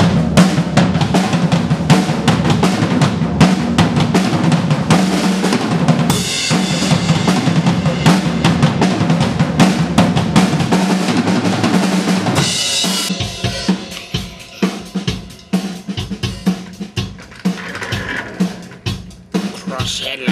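A Pearl drum kit played in a recording studio: bass drum, snare and rimshots in a busy pattern with cymbal crashes. About thirteen seconds in, the playing thins out to sparser, separate hits.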